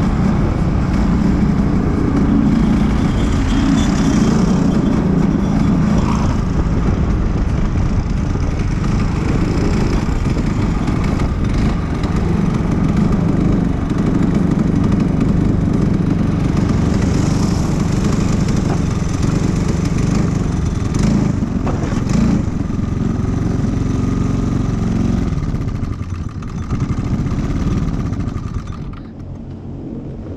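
Racing go-kart engine running hard at speed, heard from the kart itself. Near the end the sound drops away as the kart, its engine blown, rolls to a stop.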